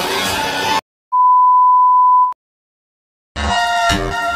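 Music cuts off abruptly, then after a short silence a single steady electronic beep at one pitch sounds for just over a second and stops; after more silence the music comes back near the end.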